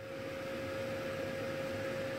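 Steady mechanical hum: one constant mid-pitched tone over an even hiss, with no changes.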